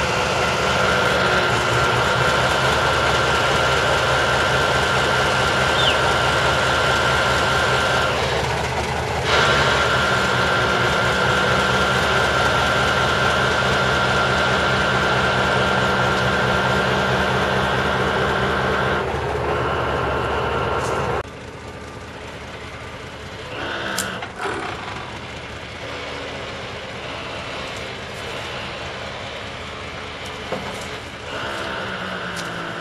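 Ural truck with a hydraulic log-loading crane, its engine running steadily with a steady whine over it. About two-thirds of the way in, the sound cuts to a quieter, more distant engine, with one short sharp knock a few seconds later.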